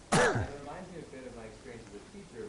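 A person clearing their throat once, short and loud, with a falling pitch, just after the start; faint speech follows.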